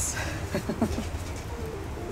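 Soft, brief laughter of a few short low chuckles over a steady low background hum.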